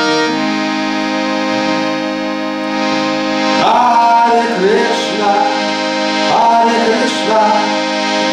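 Indian hand harmonium playing held chords of a harinam melody. A voice joins in singing over it about three and a half seconds in, pauses briefly, and sings again from about six seconds.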